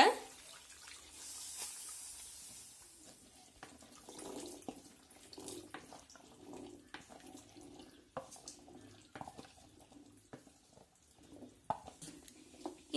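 Boiled chickpeas and their cooking water poured from a steel bowl into a pan of thick masala gravy, with soft splashing and plopping, a brief hiss near the start. A wooden spatula scrapes and taps against the steel bowl, giving scattered sharp clicks.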